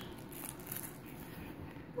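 Faint rustling and handling noise of a plush toy being pawed by a baby, over quiet room tone.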